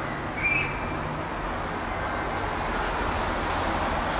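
Steady outdoor street noise with distant traffic running, and one brief high-pitched chirp about half a second in.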